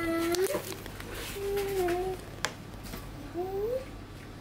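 A toddler making drawn-out, wavering cat-like vocal sounds three times, with a single sharp click about halfway through.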